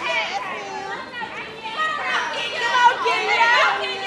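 Several high-pitched voices shouting and calling over one another, densest and loudest in the second half.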